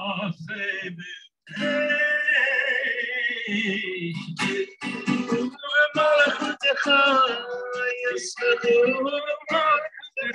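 A man singing a song with guitar accompaniment, in sung phrases with a short break about a second in.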